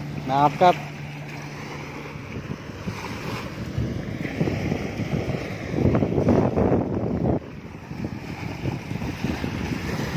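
Wind buffeting the phone's microphone over small waves washing up the sand, a rough, uneven rumble that grows louder around the middle and cuts off suddenly.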